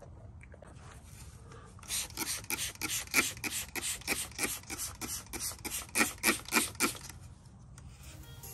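Hand trigger spray bottle misting water onto scored sand, a quick run of short spray hisses, about three or four a second, starting about two seconds in and stopping near the end. It is wetting the scored surface so that pinched-on wet sand will stick.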